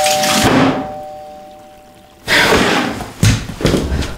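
A two-tone doorbell chime rings out over water spraying from a leaking under-sink tap connection; the spraying stops about half a second in and the chime fades away. After that, door noises with a dull thunk near the end.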